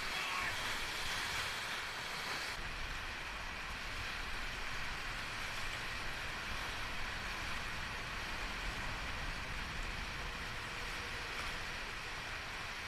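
Steady rushing of fast, flood-swollen whitewater around a kayak. The highest hiss drops away abruptly about two and a half seconds in.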